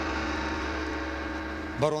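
A gong-like transition sting, struck just before and still ringing with a deep low hum beneath, slowly fading. A man's voice cuts in near the end.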